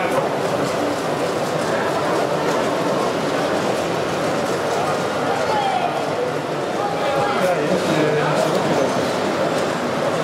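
Steady chatter of many overlapping voices in a crowded hall.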